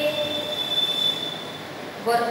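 A steady high-pitched squeal, one unwavering tone that fades out near the end: feedback ringing from the handheld microphone's PA system.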